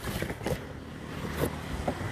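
A hard plastic tool case being handled and set down on a plastic workbench: a scraping handling noise, then a sharp knock about one and a half seconds in.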